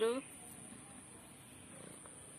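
A short, high-pitched voice call right at the start, rising then falling, followed by faint steady background noise.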